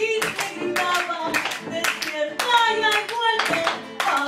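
Argentine folk trio playing live: violin and guitar with a woman singing, over steady rhythmic hand clapping in time with the music.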